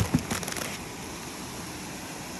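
Plastic food bags being handled and pulled out of a cardboard box: a sharp knock right at the start, then a few brief crinkles.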